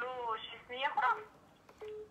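A woman's voice coming faintly over a phone line, thin and narrow-sounding, in two short bursts, with a brief steady phone beep about a second in and again near the end.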